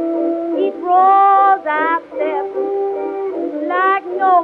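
Old early-1920s jazz dance-band record playing an instrumental passage with no vocal, wind instruments carrying a melody with sliding notes. The sound is thin, with nothing above about 4 kHz, as on an acoustic-era record.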